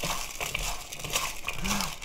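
Raw julienned potato sticks being tossed and rubbed by hand with coarse salt in a bowl, a continuous crisp rustling and crunching with many small clicks. The salt is rubbed in to draw the starch out of the potatoes.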